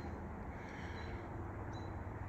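Outdoor background noise: a low, even rumble with a faint steady hum, and a brief faint high chirp near the end.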